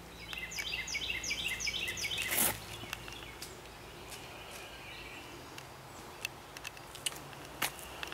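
A songbird singing a quick repeated phrase, about three falling notes a second, for the first two seconds. About two and a half seconds in, a single short sharp noise comes from the disc golf drive being thrown; a lighter click follows near the end.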